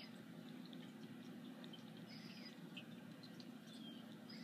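Near silence: room tone with a few faint, scattered small ticks.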